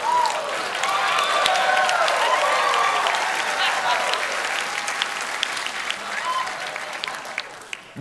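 Studio audience applauding and cheering after a joke, dying down near the end.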